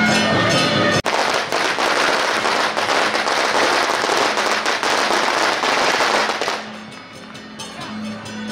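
A string of firecrackers going off in a dense, rapid crackle for about five seconds, starting sharply about a second in and dying away near the end.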